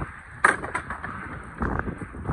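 A single sharp knock about half a second in, followed by a few fainter short knocks.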